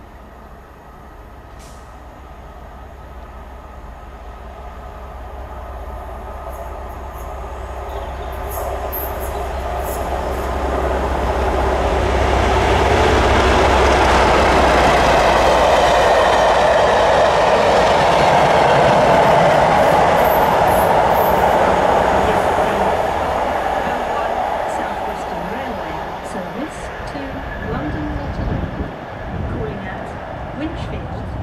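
Class 37 diesel locomotive with its English Electric V12 engine hauling a test train, approaching and passing at speed. A low engine drone grows louder, then the rumble and clatter of the coach wheels on the rails takes over, loudest about halfway through, before fading away.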